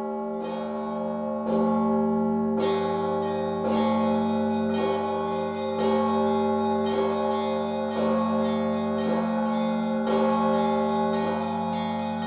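Orthodox church bells ringing, a fresh strike about once a second over the steady hum of the bells still sounding.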